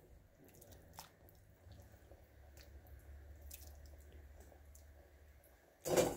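Raw shrimp tipped from a metal mesh strainer into a pan of tomato broth: faint drips and small wet plops with a few light clicks, then a louder knock near the end.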